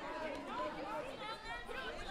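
Indistinct chatter of several people talking at once, with no single clear speaker.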